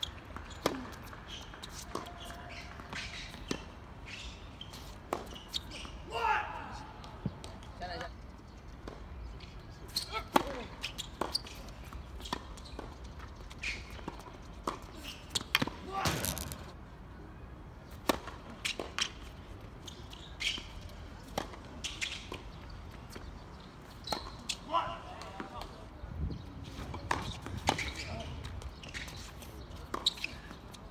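Tennis ball struck by rackets and bouncing on the court, sharp hits at irregular intervals through a rally, with a few short shouts from voices.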